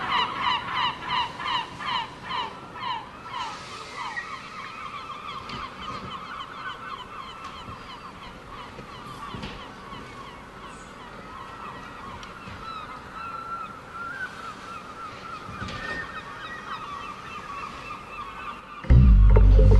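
Repeated honking calls on the soundtrack: a quick run of honks that fades over the first few seconds, then a faint, steady, wavering chorus of calls.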